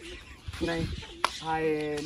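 Human voices, with a drawn-out voiced sound in the second half, and a single sharp smack a little past the middle.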